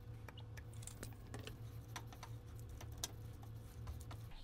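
Light, irregular clicks and taps of a utensil working shredded chicken and barbecue sauce in a pan, over a low steady hum.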